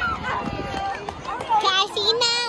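Young children's voices talking and calling out, with a louder high-pitched cry about a second and a half in.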